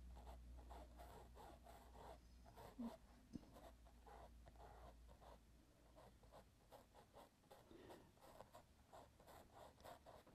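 Near silence: faint, scattered strokes of a small paintbrush dabbing paint onto the mural surface, with a faint low hum that stops about halfway through.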